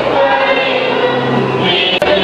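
Choir singing, many voices together in a slow sung passage.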